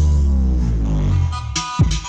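Electronic music played through 15-inch 'classic' bass speaker cabinets in a sound check: a deep bass tone slides steadily downward in pitch for about a second and a half, then sharp drum hits come in near the end.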